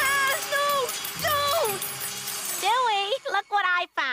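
A cartoon boy's voice crying: long, high, wavering wails, then quicker cries near the end, over faint background music.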